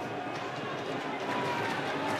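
Steady background noise of a rugby ground on a match broadcast feed, with faint distant voices and no distinct event.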